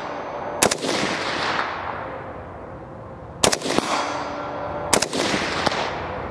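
Three suppressed rifle shots from an FN SCAR fitted with a HUXWRX HX-QD Ti 30-caliber flow-through suppressor. They come about half a second in, then about three and a half and five seconds in, and each is followed by a long fading echo.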